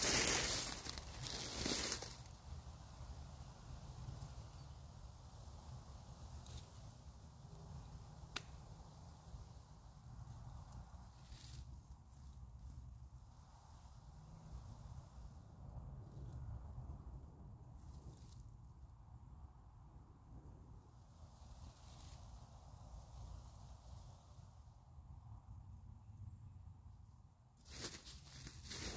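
Footsteps crunching through dry fallen leaves for about two seconds, then quiet woodland with a steady low rumble and a few faint ticks and rustles.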